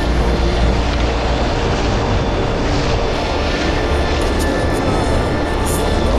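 Wind buffeting an action-camera microphone over the wash of shallow surf: a steady low rumble under a dense hiss.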